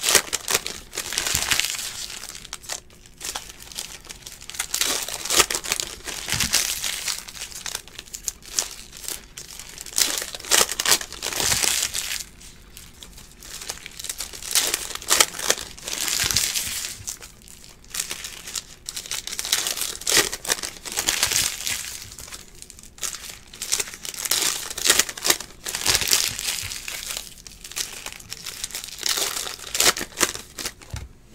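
Foil wrappers of 2018 Panini Unparalleled football card packs crinkling and tearing as they are ripped open by hand, in repeated bursts of crackling.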